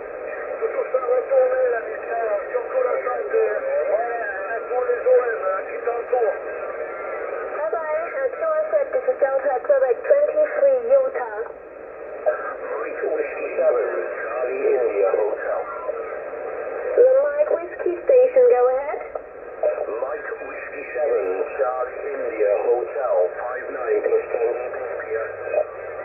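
Amateur radio voice traffic on the 40-metre band, received in single-sideband by a Yaesu FT-991A transceiver and heard from its speaker. The talk is squeezed into a narrow, thin-sounding band over a steady hiss of band noise.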